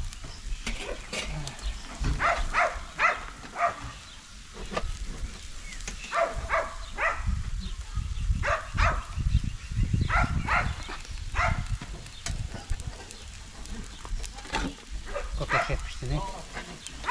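Farm animals bleating in quick runs of short, high calls, again and again. A low rumble sits under them in the middle.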